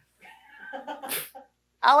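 A woman laughing softly under her breath, with a short breathy exhale about a second in.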